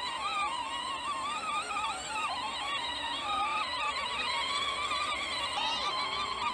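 Whine of a Peg Perego 12 V ride-on tractor's electric motors and plastic gearboxes running in first gear, its pitch wavering up and down as it drives over uneven grass.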